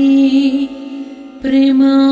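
A woman singing a Sanskrit devotional hymn in a chanting, melodic style with musical accompaniment. The voice breaks off for a moment about a second in, then resumes.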